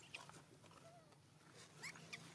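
Faint, brief high-pitched squeaks from a baby macaque, a few scattered through: one right at the start, a soft short call about a second in, and a couple of rising squeaks near the end.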